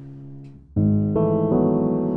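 Digital piano played with a piano sound. A low held note fades away, then about three-quarters of a second in a loud full chord is struck, and more high notes join a moment later.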